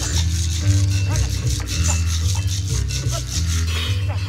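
Live experimental jazz: a double bass holds low notes under a fast, even rattle of hand percussion.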